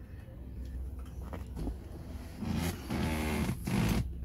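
Front bucket seat back being unlatched and tipped forward: a few clicks of the seat-back latch, then a drawn-out creak of the vinyl upholstery over a steady low hum.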